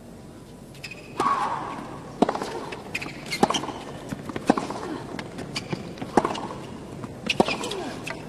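Tennis rally: a serve and then a ball struck back and forth by rackets, with sharp hits roughly once a second.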